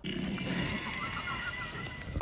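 A monster in a TV soundtrack snarling faintly, with a few small squeals, as the wounded creature turns out to be still alive.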